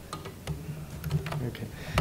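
Typing on a laptop keyboard: irregular key clicks, several a second.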